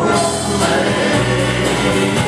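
Live gospel music: a church band with piano, drums and guitar playing while voices sing.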